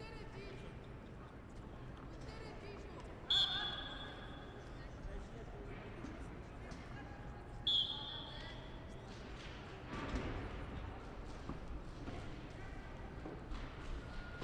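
Murmur of voices and general noise in a large sports hall, cut by two short, loud, high-pitched signal tones about four seconds apart, each lasting under a second.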